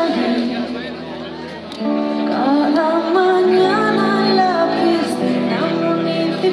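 Live band playing a song, with a woman singing held, gliding notes over the instruments. The music drops back briefly and comes in fuller again just under two seconds in.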